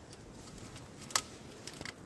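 Footsteps crunching on icy snow over a steel grating walkway, faint and crackly, with one sharp click a little over a second in and a few small ticks near the end.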